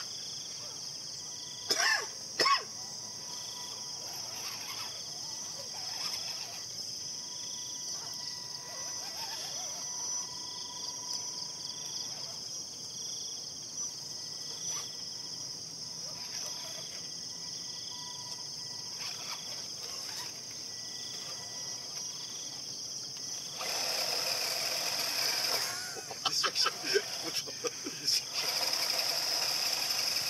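A steady, high insect chorus with soft pulsing chirps repeating about every second or so. Two sharp knocks come about two seconds in, and near the end a louder rush of noise sets in with a run of clicks and knocks.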